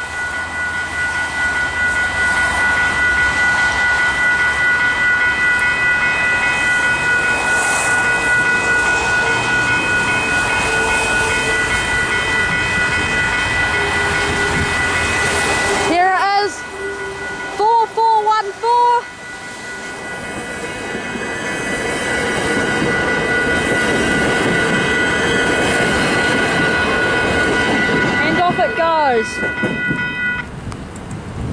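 Level-crossing electronic bells (Western Cullen Hayes e-bells) ringing steadily in a high tone over the rushing noise of a passing train. The bells cut off at the very end: on the quiet setting they stop before the barriers go up.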